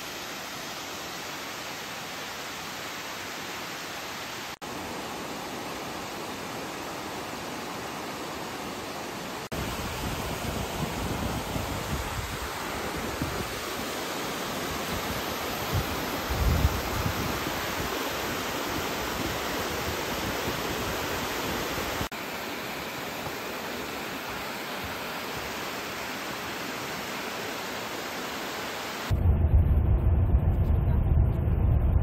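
Steady rush of a mountain waterfall and a stream cascading over granite, heard across several clips that change abruptly. From about ten seconds in to about two-thirds through, a deeper, uneven rumble joins. In the last second it cuts to the low drone of a bus driving on a highway.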